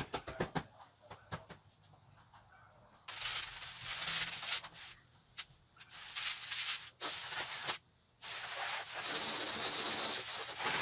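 A few light knocks and clicks, then a garden hose spray nozzle hissing as it sprays water. The spray is cut off and restarted twice, in three bursts.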